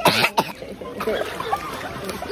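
A child coughing, a few loud bursts in the first half second as she catches her breath on coming up out of pool water, then faint children's voices.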